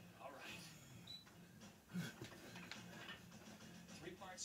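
Quiet room with a faint person's voice, and a single thud about two seconds in.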